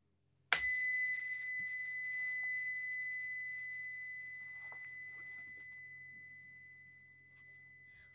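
A small bell struck once, half a second in, then ringing with a clear high tone that fades slowly over about seven seconds, marking the close of the dedication prayers.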